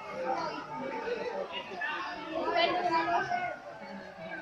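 Several people talking over one another, an indistinct crowd chatter, with louder raised voices about two and a half to three seconds in.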